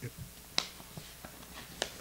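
Sharp clicks and taps from papers being handled on a lectern close to the microphone: the loudest about half a second in, another near the end, with fainter ones between.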